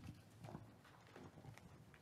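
Faint, irregular footsteps with a few soft knocks and shuffles.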